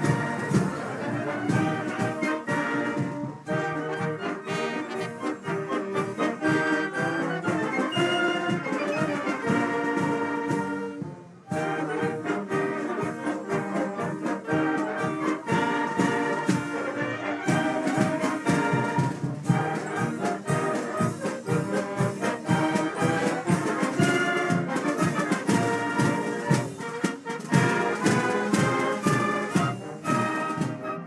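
Youth wind band playing: flutes carrying the tune over trumpets, horns and tubas, with a steady beat. There is a brief break about eleven seconds in, then the playing carries on.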